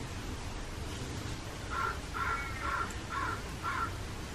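A crow cawing five times in quick succession, about two caws a second, starting a little before halfway through.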